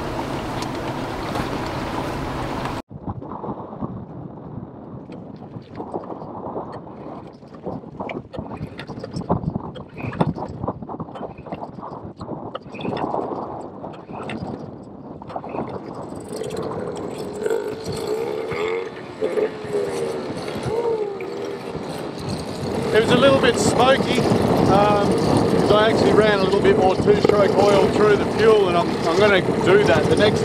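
A small Yamaha two-stroke outboard, just serviced after being sunk in the sea, starts and runs about halfway through, after some clicking and handling. Its pitch wavers, and from about two-thirds in it runs louder as it is revved.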